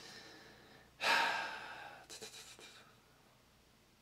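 A man sighs: a faint breath in, then a long breath out about a second in that fades away over a second or so.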